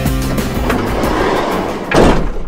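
Background music with plucked guitar. Its notes give way to a noisy rushing sound that builds and ends in a sudden loud hit.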